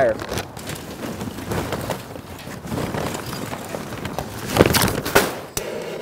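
Lump charcoal pouring from a paper bag into a metal chimney starter, the chunks clattering and rattling against the steel, with two sharper knocks near the end.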